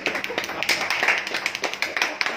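A small group of people clapping, with many uneven claps.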